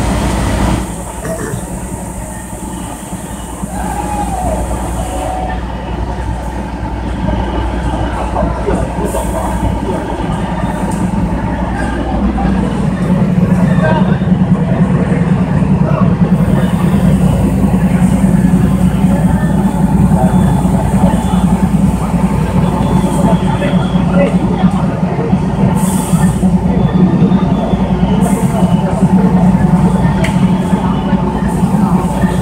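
Fire apparatus engine running steadily at the scene, a low drone that grows louder about twelve seconds in, with indistinct voices of onlookers.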